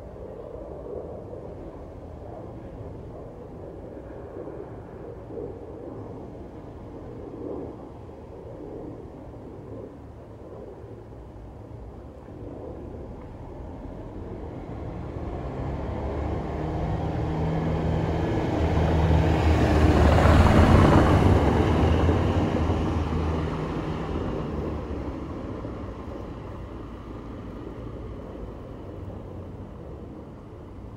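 A motor vehicle passes by over a low background hum. Its engine drone and noise swell slowly to a peak about two-thirds of the way through, then fade away.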